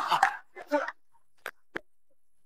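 A voice trails off in the first second, then come two sharp, short smacks about a quarter second apart.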